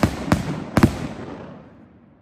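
MTK Skull Crusher 49-shot 500-gram firework cake: three aerial shots bursting with sharp bangs less than half a second apart, followed by a rumble that fades over about a second.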